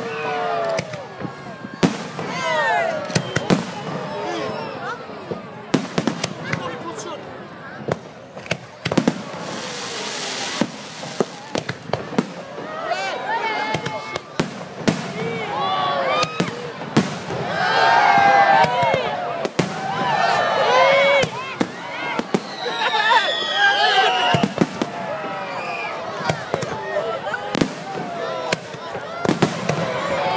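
Aerial fireworks shells bursting close by: a string of sharp bangs at irregular intervals, with people's voices underneath.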